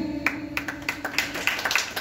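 A group of people clapping: many irregular hand claps close together.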